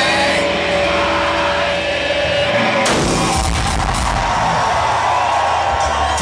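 Live hard rock band holding a sustained chord, then about three seconds in a sudden loud crash of drums and cymbals with heavy bass as the band plays on, in a loud club.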